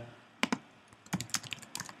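Typing on a computer keyboard: two keystrokes about half a second in, then a quick run of about ten between one and two seconds in.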